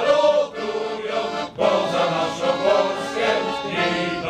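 Men's choir singing in several parts, with short breaks between phrases about half a second and a second and a half in.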